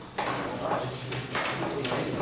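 Indistinct voices talking quietly in a classroom, starting about a fifth of a second in.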